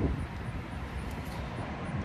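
Steady low rumble of distant city traffic.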